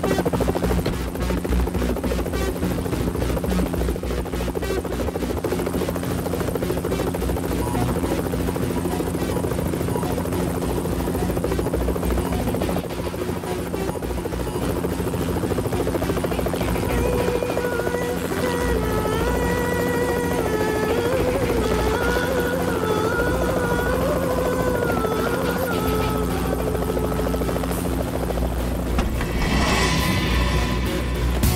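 A helicopter's rotor chops steadily over a film score. A wavering melody in the music comes in a little past the middle.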